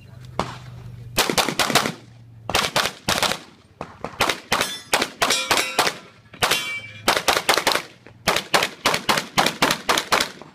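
Handgun fired rapidly in quick strings of two to four shots with short pauses between groups; the first shot comes about a second in, on the draw after the start beep. Steel plate targets ring from hits.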